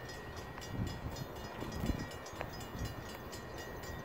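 Faint, steady low rumble of an approaching diesel freight train still some distance off.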